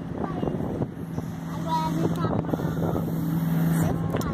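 A steady low engine hum that grows stronger about a second in, with faint voices and wind in the background.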